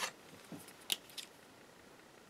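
Quiet handling of a pen: a sharp click as it is picked up, then a couple of light clicks about a second in as its cap is pulled off.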